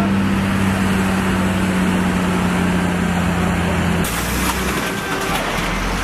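A large vehicle engine idling, a steady low hum. About four seconds in it breaks off abruptly into a broader, rougher rumble of heavy vehicles.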